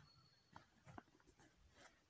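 Near silence, with a few faint light ticks about halfway through from hands marking measurements on fabric along a tape measure.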